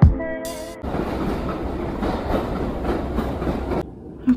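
Background music ends with a last beat under a second in. A steady, even rumbling noise with hiss follows and cuts off abruptly just before the end.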